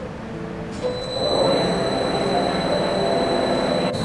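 Large oil-country lathe's spindle starting up about a second in, then running steadily with a steady high whine.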